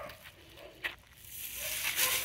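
Footsteps and handling noise while walking on a dirt road: a single faint click just under a second in, then a scuffing rustle that grows louder.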